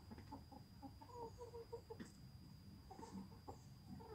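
Hens clucking quietly, a string of short clucks in the middle and a few more near the end.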